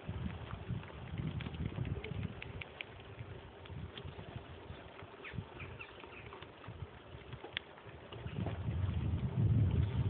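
Bicycle tyres rolling on a gravel path with wind rumbling on the phone's microphone while riding, getting louder in the last couple of seconds. Faint short high ticks and chirps come and go.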